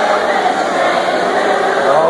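A large crowd of high-school students singing their school alma mater together, many voices blending into one dense, continuous sound.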